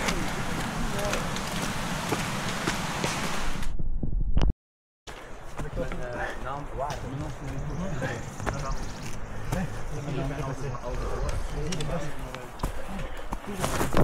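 Footsteps on a steep, muddy trail climb with rustling noise on a body-worn microphone, broken by a brief silent gap about four and a half seconds in. After the gap, indistinct voices of other runners come in over the steps.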